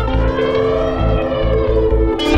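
Live electronic techno: a steady, pulsing kick drum under sustained synthesizer and electric guitar tones, with a sweep that rises and falls like a siren. About two seconds in, the sound brightens and a new guitar note comes in.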